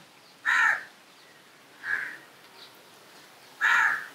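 A crow cawing three times: two loud caws about half a second in and near the end, with a fainter one between.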